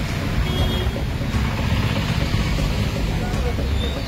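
Steady road traffic noise, a constant low rumble of passing vehicles.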